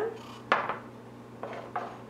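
Glass bowls set down on a wooden tabletop: a sharp knock about half a second in, then a softer one about a second later.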